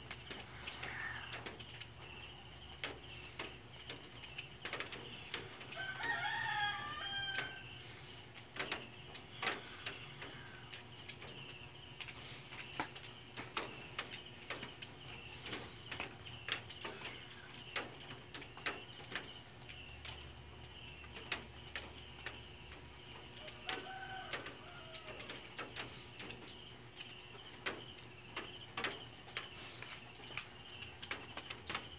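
A rooster crowing twice, once about six seconds in and again more faintly near twenty-four seconds, over a steady chorus of crickets.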